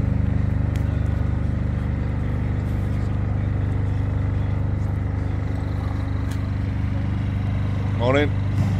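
An engine running steadily, a constant low drone that holds the same pitch throughout.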